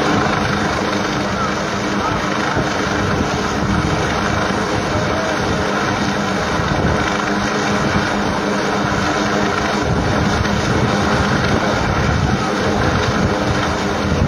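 A hovering military helicopter, its rotor and engine running steadily, heard over wind on the microphone.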